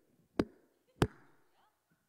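Two sharp knocks about half a second apart, each ringing briefly in a large room, from blows struck while a piñata being hit is acted out.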